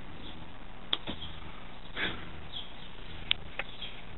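Rain falling in a sunshine shower: a steady soft hiss, with a few single sharp ticks of drops, one about a second in and two near the end.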